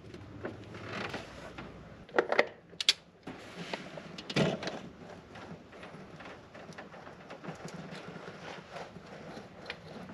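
Ratchet wrench clicking as it turns the engine's crankshaft pulley to roll a stretch-fit serpentine belt into place, with a few louder metallic knocks. The belt is very tight going on.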